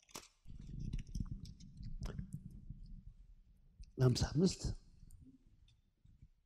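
Low rustling and handling noise close to a handheld microphone, with many fine clicks, for about three seconds; about four seconds in, a short spoken word, the loudest sound, then faint clicks.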